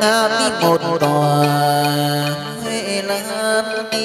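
Vietnamese hát văn (chầu văn) ritual singing: a voice with wide vibrato, then a long held note about a second in, over traditional instrumental accompaniment.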